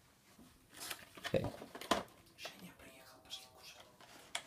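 Speech only, quiet: a voice says "okay", then mutters faintly.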